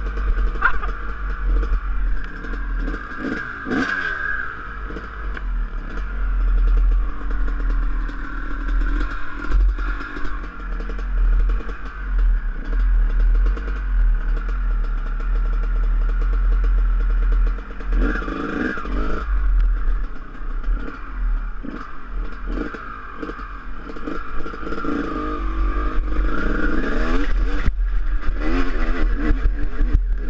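Dirt bike engine running steadily with a few brief revs, then revving harder near the end as the bike pulls away up a steep slope.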